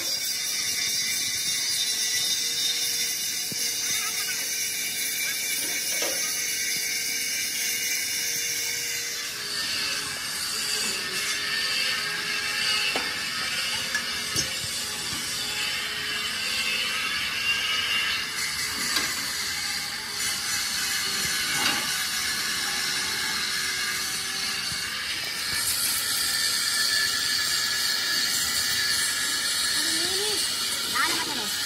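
Electric arc welding on steel frame members: a steady crackling hiss from the arc, with a faint steady hum underneath and a few sharp metal knocks.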